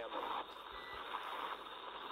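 Hiss of an open radio channel between transmissions on the spacewalk communications loop, with a short steady beep about three quarters of a second in.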